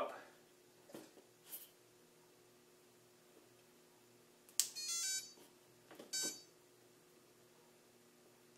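Brushless motor beeping as a 30 A BlueSeries ESC running SimonK firmware powers up with the throttle at full. A sharp click is followed by three quick rising tones and, about a second later, a single beep: the signal that the high-throttle position is recognized for throttle calibration.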